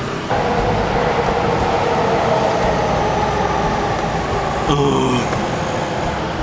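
Steady running noise of a motor vehicle's engine close by on the street, a low rumble with a steady hum over it, starting abruptly just after the start.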